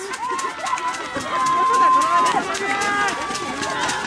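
Voices of players and spectators shouting across an open football field, including one long, high held call about a second in.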